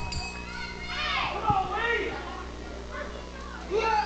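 Children in the wrestling crowd yelling and calling out in high voices that rise and fall, with a dull thump about a second and a half in.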